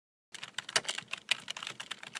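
Keyboard typing sound effect: a quick, irregular run of keystroke clicks starting about a third of a second in, out of dead silence, as the channel name comes up on screen.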